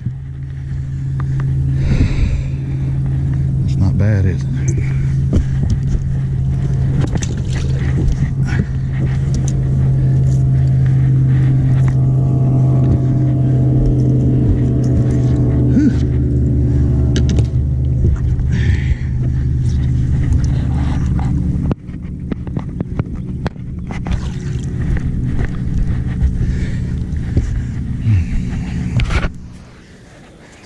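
A steady low motor hum, dropping suddenly in level about two-thirds of the way through, with scattered knocks and clicks of handling over it.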